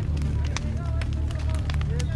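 Indistinct voices of people in the background over a low steady hum, with scattered sharp clicks and crackles.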